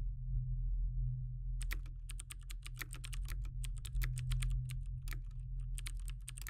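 Rapid typing on a laptop keyboard, a quick run of key clicks starting about a second and a half in, over a steady low hum.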